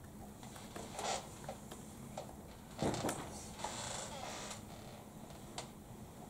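Faint, scattered clicks of laptop keystrokes in a quiet room, with a louder soft thump about three seconds in.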